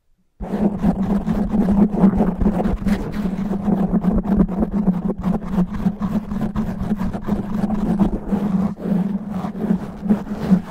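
Natural fingernails scratching fast and rough over a foam microphone windscreen. The result is a loud, dense, rumbling scratch that starts suddenly about half a second in, out of silence, and keeps on without a break.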